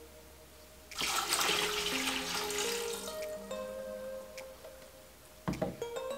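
Water poured from a plastic measuring pitcher into a stainless steel pot: a splashing pour starts about a second in and tapers off over a few seconds. Background music plays throughout, and a knock near the end comes as the pitcher is set down on the counter.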